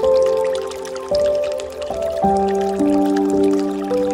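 Slow, calm instrumental background music: held notes that move to a new pitch about once a second, with soft new notes entering over the sustained ones.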